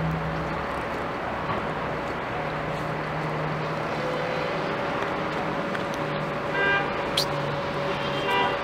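Steady hum of road traffic and running engines, with a short high-pitched tone about a second before the end.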